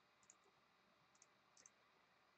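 Near silence with a few faint computer clicks as digits are entered on an on-screen calculator, one near the start, one past the middle and a quick pair soon after.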